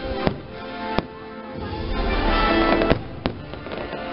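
Fireworks bursting over music playing: four sharp bangs, one shortly after the start, one about a second in, and two close together about three seconds in.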